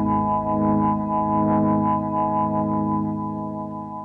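Band music with no singing: a held chord on keyboard with upright bass, ringing steadily and dying away over the last second.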